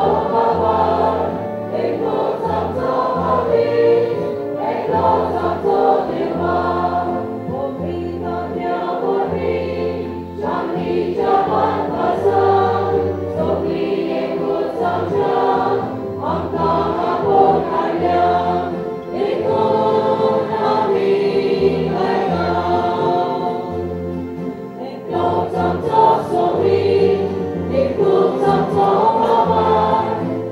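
Church choir singing a hymn through microphones, voices in unison over sustained low bass notes that change about once a second.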